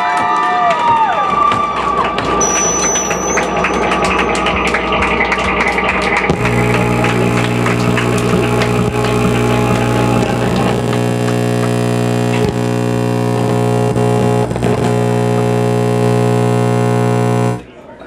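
Crowd cheering and whooping, then about six seconds in a loud, steady, distorted electronic drone with many overtones sounds through the PA and holds until it cuts off suddenly near the end.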